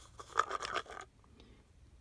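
Small plastic cup of carb cleaner handled in the hand, with a quick run of scratching and clicking in the first second as the idle jets inside shift against the plastic.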